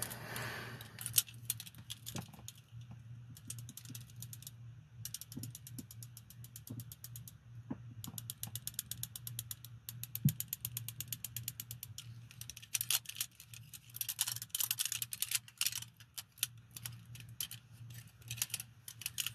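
Steel handcuffs' ratchet clicking in rapid runs as the cuffs are worked, several bursts of fast, even clicks over a steady low hum.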